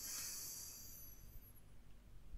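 A faint, airy inhale through the nose, fading out over about a second and a half.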